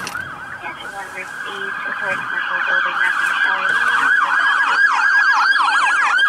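Fire truck siren yelping in fast rising-and-falling sweeps, several a second, growing louder as the truck approaches and passes, heard from inside a car.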